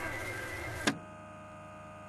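A steady hum of several tones is broken by a sharp click about a second in, after which a quieter steady hum continues.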